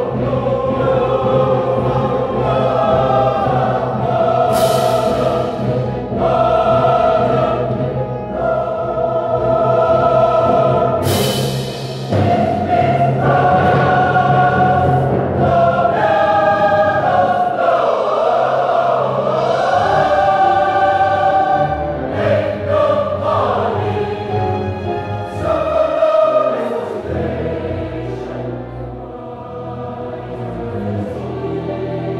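Live choir singing a slow piece in long held chords over a steady low accompaniment, with a few brief hissy consonants.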